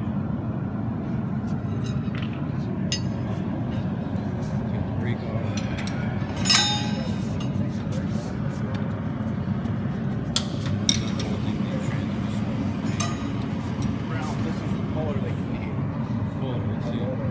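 Metal hand tools and steel parts clinking and tapping, with one louder ringing clink about six and a half seconds in and two sharp clicks about four seconds later, over the murmur of several people talking in a shop.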